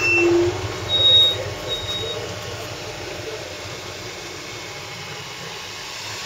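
A few short electronic beeps in the first two seconds, then the steady low hum of a distant off-road vehicle's engine.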